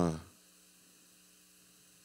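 A man's spoken word ends just after the start, then near silence with only a faint, steady electrical hum.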